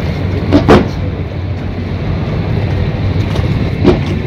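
Fireworks shells bursting: two booms in quick succession about half a second in and another near the end, over a steady low rumble.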